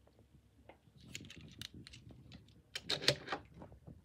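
Light clicks and taps of small diecast cars being handled against a wooden shelf, in two short clusters, about a second in and about three seconds in.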